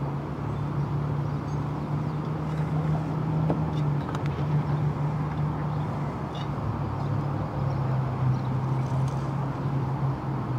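Steady low electric hum from a bow-mounted Garmin Force trolling motor running, its pitch wavering slightly, with a few faint clicks about halfway through.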